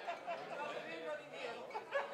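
Background chatter of many people talking at once around dining tables, no single voice standing out.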